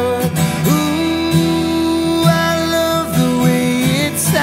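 Acoustic guitar strummed steadily under a man's voice holding long sung notes that slide from one pitch to the next.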